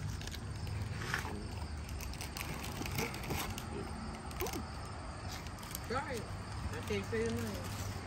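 Scattered soft crinkles and clicks from a foil snack wrapper being handled, over a quiet outdoor background. Brief low voice sounds follow near the end.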